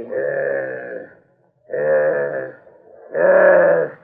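A voice crying out in three long, drawn-out wails, each about a second long and each louder than the last.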